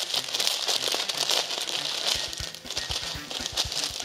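Clear plastic packet crinkling steadily as it is handled and pulled open by hand.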